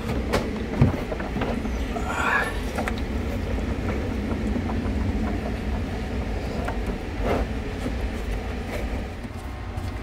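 A steady low rumble runs under scattered knocks, clicks and rattles as the plastic trunk floor panel of the car is handled and lowered into place.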